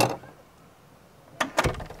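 Lever handle and latch of a Sticklabs NFC smart lock being worked just after it has unlocked: a short cluster of sharp clicks and a low clunk about a second and a half in.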